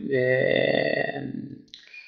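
A man's drawn-out hesitation sound, a long steady "uhh" held for about a second and a half that turns rough as it fades.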